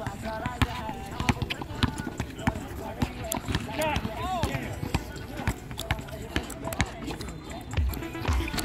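Background music with a singing voice and a run of sharp knocks.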